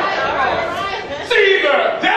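Speech: a man preaching into a handheld microphone, his voice filling a large hall, with other voices chattering.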